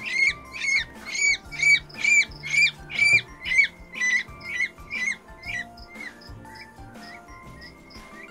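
Newly hatched peachick peeping loudly and repeatedly, about two high calls a second, growing fainter and stopping about six seconds in, over background music.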